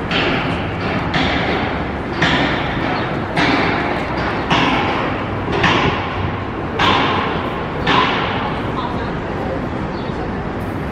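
Steady footsteps on a city sidewalk: a scuffing swish with each stride, about one a second, over steady street noise.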